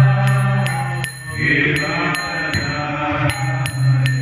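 A man chanting a devotional prayer as a song into a microphone. Under it runs a steady low drone, and small hand cymbals clink in an even rhythm, about two to three strikes a second.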